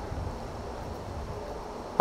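Steady low rumble of wind buffeting the microphone, over a faint, even outdoor background hiss.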